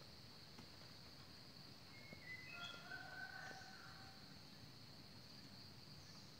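Faint outdoor ambience: a steady high insect drone, with a few short, soft bird whistles about two to four seconds in.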